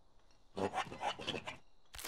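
A quick run of short scraping strokes, about a second and a half long, starting about half a second in: a cartoon scraping sound effect of a body pinned under a fallen mule and wriggling in the dirt.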